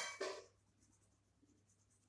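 Pencil scratching on sketchbook paper: two quick strokes at the very start, then only faint, lighter scratching.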